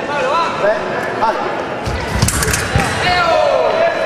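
A sabre fencing exchange: shoes squeak on the strip, then about two seconds in there is a quick flurry of stamping footwork and sharp blade clicks. Just after it comes a long shout that falls in pitch.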